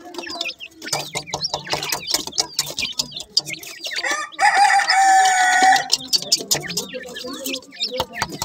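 Grey francolin chicks peeping and chirping in quick, overlapping short calls as they scuffle. About halfway through, one louder, steady call is held for about a second and a half.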